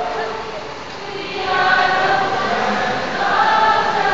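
A group of young voices singing a song together, getting louder about a second and a half in.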